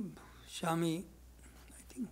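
A man's voice saying one short syllable about half a second in, over a faint steady low hum.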